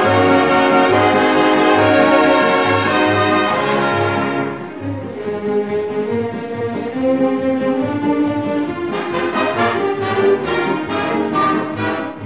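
Instrumental break in an orchestral arrangement of an Italian popular song, with brass to the fore. A full chord is held for about four seconds, then the music drops to a softer passage. In the last few seconds short, accented notes come in, all over a steady bass beat.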